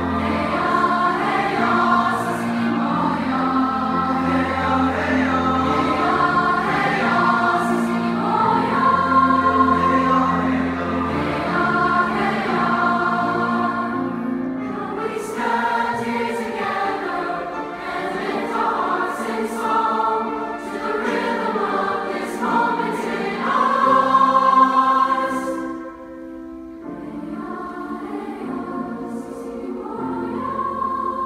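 Large mixed-voice choir singing with piano accompaniment, sustained sung chords throughout. Near the end the sound drops briefly, then the singing carries on more softly.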